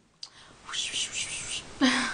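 A woman whispering softly in a few short breathy pulses, then starting a short voiced sound near the end.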